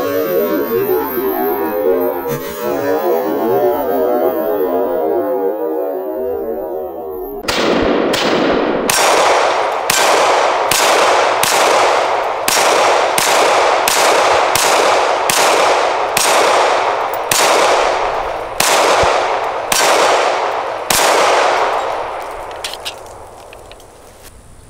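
Canik TP9SFX Rival 9mm pistol fired in slow, steady succession, about one shot every 0.85 s, each shot ringing on. The shots begin after a long warbling stretch of several seconds and fade out near the end.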